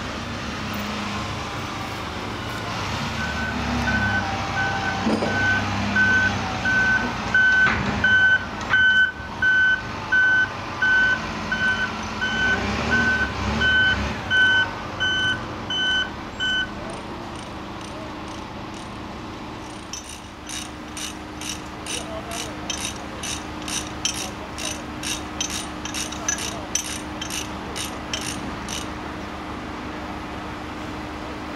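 Articulated dump truck's diesel engine running while its reversing alarm beeps steadily, about once a second, for some thirteen seconds. Later a quicker run of short high-pitched pulses, two or three a second, comes over a steady hum.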